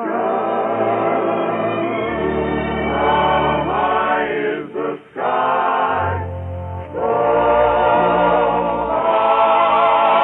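1940s dance orchestra playing sustained, wavering chords in the closing passage of the song, with a brief break about five seconds in. The sound is cut off above about 4 kHz, as in an old 1946 recording.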